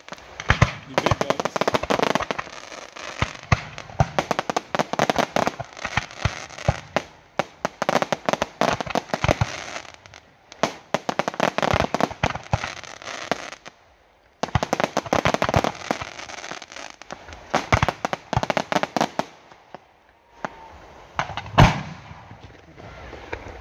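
Fireworks display: aerial shells going off in rapid volleys of sharp bangs and crackle. There is a short pause about two-thirds of the way through, and the single loudest bang comes just before the end.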